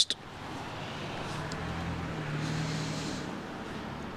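Steady background noise with a faint low hum and a brief stretch of hiss about two and a half seconds in.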